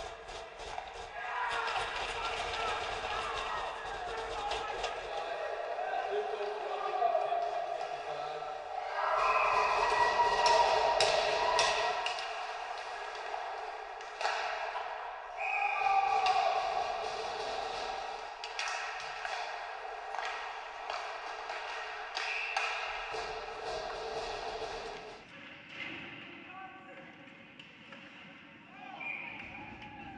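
Ice hockey game sound in a rink: indistinct shouting from players and spectators, with repeated sharp clacks of sticks and puck against the ice and boards.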